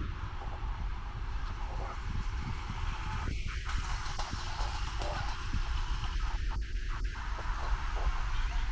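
Street background of road traffic going by, with a steady low rumble of wind on the microphone.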